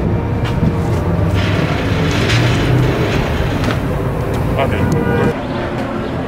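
Steady low rumble of city street background noise, with a brief spoken word near the end.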